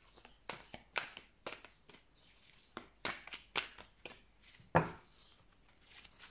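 A deck of tarot cards being shuffled and handled by hand: an irregular string of soft card clicks and taps, with one louder knock near the end.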